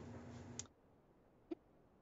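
Near silence, broken by two faint short clicks, one about half a second in and one about a second and a half in.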